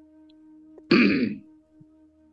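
A man briefly clears his throat: one short voiced sound, about half a second long and falling in pitch, about a second in, over a faint steady hum.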